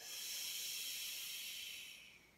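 A long audible Pilates exhale, breath hissed out through pursed lips for about two seconds as the bent leg lifts.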